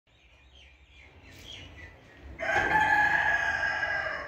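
A rooster crowing once, a long call that starts about two and a half seconds in and is the loudest sound. Faint small-bird chirps come before it.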